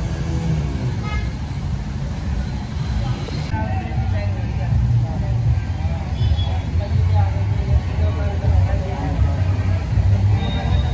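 Road traffic on a flooded street: vehicle engines running in a steady low rumble, with people's voices in the background.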